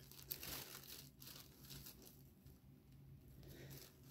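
Faint rustling and crinkling of paper and packing in a cardboard box as a cat noses through the contents, with a few soft clicks in the first second or so over a low steady hum.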